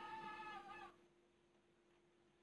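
Whiteboard marker squeaking against the board while writing: one high, steady squeal that stops about a second in.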